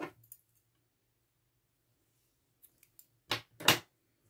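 Scissors snipping through crochet yarn: two quick cuts close together near the end, after a few near-silent seconds.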